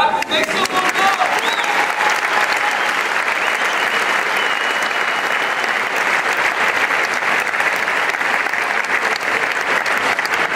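Large audience applauding steadily, with a few voices calling out over the clapping near the start.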